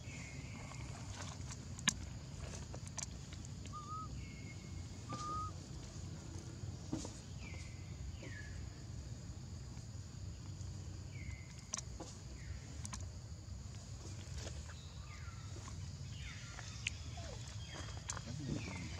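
Outdoor ambience: a steady low rumble, with short, falling chirped animal calls every few seconds and a few sharp clicks.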